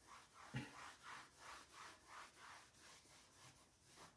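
Pink eraser rubbing chalk off a blackboard in quick back-and-forth strokes, about two to three a second, faint.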